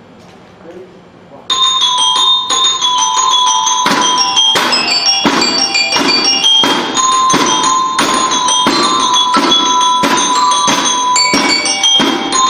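Percussion band with bell lyres starting to play about a second and a half in: a bright, ringing melody struck on the lyres with mallets, joined a couple of seconds later by steady drum strokes.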